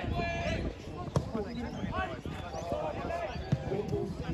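Football (soccer) ball kicked twice, two sharp thuds about a second in and again near the end, amid players' shouts across the pitch.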